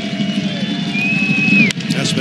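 Ballpark crowd noise with a long, high steady whistle, then the sharp crack of a wooden bat meeting a pitched baseball near the end.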